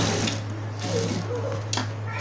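Industrial sewing machine stitching a crocheted rug, then stopping about a third of a second in. A low steady hum carries on, and there is a single click shortly before the end.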